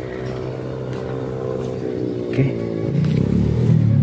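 A motor vehicle engine running, with a steady hum that grows louder over the last second or so.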